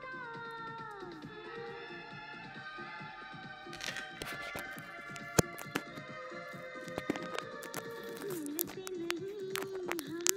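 Bollywood film song playing: a sung note glides down about a second in, then held melodic notes carry on. Several sharp clicks come from about four seconds in, the loudest about five and a half seconds in.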